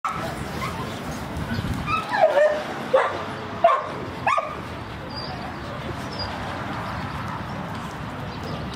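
A dog giving four short, high yapping barks a little under a second apart, starting about two seconds in.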